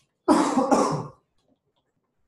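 A person coughing: two quick coughs run together, about a second long, loud and close to the microphone.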